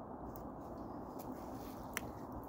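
Faint steady background noise with one sharp click near the end.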